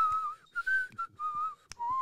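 A man whistling a short wandering tune of about five notes as mock elevator music. The last note is lower and held longer. A single sharp click comes just before the last note.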